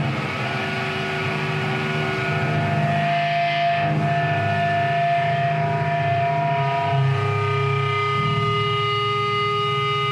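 Live thrash metal band's distorted electric guitars holding sustained notes and feedback: several steady tones ringing over a low rumble, one of them dropping out about seven seconds in.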